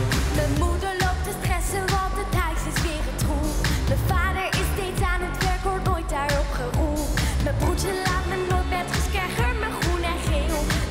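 A young girl singing lead vocals in an upbeat pop song, over a steady dance beat.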